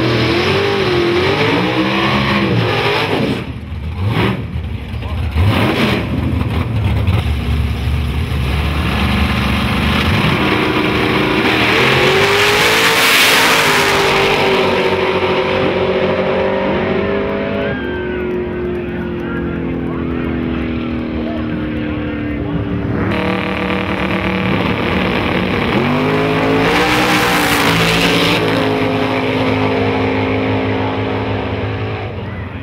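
Drag race cars' engines revving at the starting line, then launching down the strip, the engine pitch climbing and dropping suddenly a couple of times as the cars shift. Near the end another car revs at the line.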